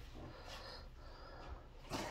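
Faint, quiet sounds from a small dog behind a baby gate, in a lull between its barks.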